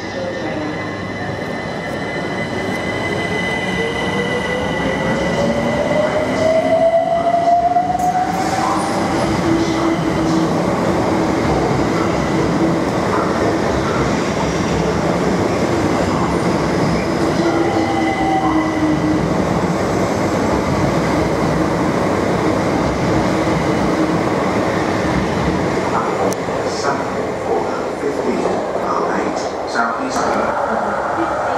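Southeastern electric multiple unit pulling out and passing close by. The traction motors whine and climb in pitch for the first several seconds as it accelerates, then settle into a steadier whine over the continuous rumble of wheels on rail as the carriages go past.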